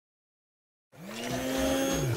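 Silence, then about a second in a cartoon blender's motor starts and whirs up, its pitch rising and then holding steady.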